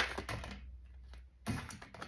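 A deck of reading cards shuffled by hand: a last sharp card snap at the start, then a brief rustle of cards about a second and a half in as the cards are spread out.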